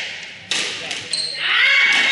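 Squash rally in a reverberant court: two sharp cracks of the ball off racket and wall in the first second, then a high, bending squeal of court shoes on the wooden floor.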